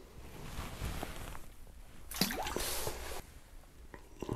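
A small walleye being let go back into the ice hole: a short watery splash and dripping about two seconds in, lasting about a second.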